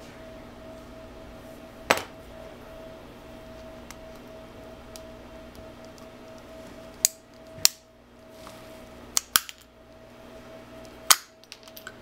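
Sharp clicks and snaps of a thin metal screwdriver prying at the clear plastic cover of an old Alco isolation relay. There is one click about two seconds in, then five more in quick succession in the second half.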